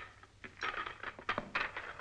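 Pool balls clacking against each other several times, sharp clicks mixed with a rattling clatter.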